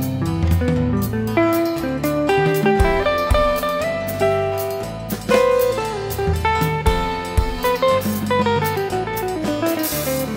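Ibanez AG95 hollow-body electric guitar picking a jazz-tinged melody over a drum kit and bass line, with a falling run of notes near the end.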